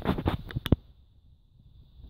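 Handling noise from a camera being adjusted by hand: rustling and a few clicks, the sharpest about two-thirds of a second in, then near quiet.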